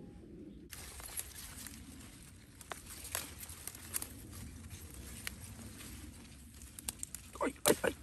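Leaves rustling with scattered soft clicks and snaps as white radishes are pulled up by hand from garden soil. Near the end a man cries out "ai ai ai" several times.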